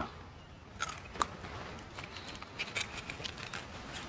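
A person chewing the tail and stinger of a dried scorpion: a few small, scattered crunches, one about a second in and several more from about two to three and a half seconds.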